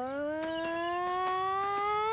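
A cartoon sound effect: one long tone gliding slowly upward in pitch, with a slight wobble near the end, marking a shadow growing bigger.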